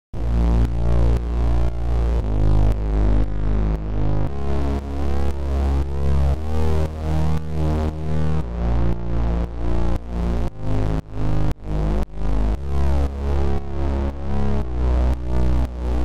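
Synthesizer bass line with its volume pumping in a repeating sidechain-style pattern, about two dips a second, shaped by Xfer LFO Tool's synced volume LFO. A popping click sounds each time the LFO shape repeats.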